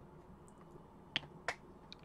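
Two faint, sharp clicks about a second in, half a second apart, then a weaker one near the end: chopsticks tapping a clear plastic food container while eating.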